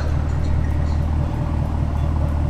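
Chevrolet Camaro's LT1 6.2-litre V8 idling steadily.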